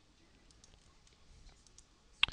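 Near silence: room tone with a few faint clicks from computer input devices, keys or mouse buttons being pressed.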